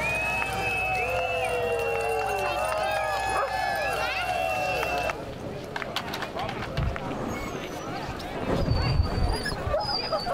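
Many sled dogs howling and yelping together in overlapping, arching calls. The chorus cuts off about five seconds in, giving way to a noisier stretch with a few thumps and faint high yips.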